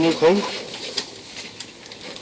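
A man's voice speaking into press microphones, breaking off into a pause about half a second in, with a faint click about a second in.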